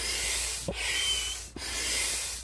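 INTEX 68615 large hand pump worked in steady strokes, each stroke a rush of air through the hose into the pontoon's valve, with a click at each turn of the stroke, a little under one a second. A brief thin whistle rides on one stroke about a second in.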